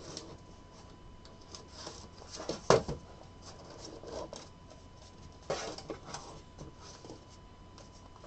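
Hands handling a small cardboard card box, sliding its paper band off and working the box open, with light rubbing and scraping. There is a sharp tap or click a little under three seconds in, the loudest moment, and another run of scraping about five and a half seconds in.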